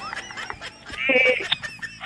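A woman laughing, rising to a high, squealing peak about a second in.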